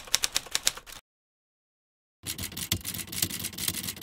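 Typing sound effect: a quick, even run of key clicks that stops about a second in, then after a silent gap a second, denser clatter of clicks from about two seconds in.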